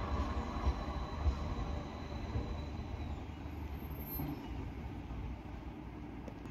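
Tram running in on its rails with a low rumble and a faint high steady whine, the whine stopping about three seconds in and the rumble slowly fading.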